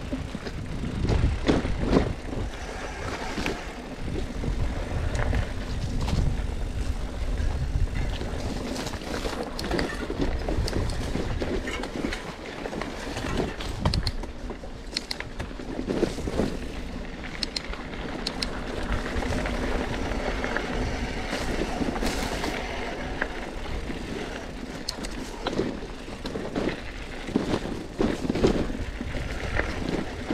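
Loaded mountain bike ridden over a dirt singletrack: a steady low rumble on the microphone with frequent short knocks and rattles from the bike and its bags as it goes over bumps.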